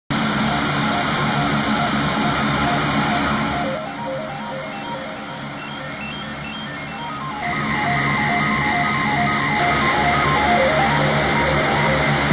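Background music, a steady run of short repeated notes, laid over the steady running of a taxiing C-130's four turboprop engines. The engine sound falls away from about four seconds in and returns about seven and a half seconds in, while the music carries on.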